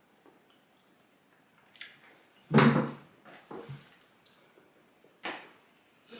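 A wooden chair knocking and scraping briefly about two and a half seconds in, followed by a few softer knocks and handling noises.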